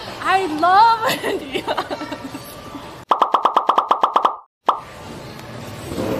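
A woman's high, excited laughing voice, then about halfway through a rapid, evenly spaced run of about a dozen short pulses, some nine a second. It cuts off suddenly into dead silence.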